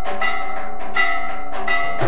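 Temple aarti bells struck over and over in a steady rhythm, two to three strikes a second, each strike ringing on over a continuous ringing tone.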